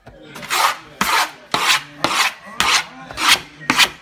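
Skateboard grip tape being scraped along the deck's edge to score its outline: repeated rasping strokes, just under two a second.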